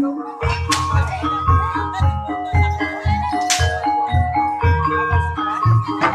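Javanese gamelan playing ebeg dance accompaniment: struck keyed instruments play a busy melody over steady drum strokes, with two sharp crashes, one about a second in and one just past halfway.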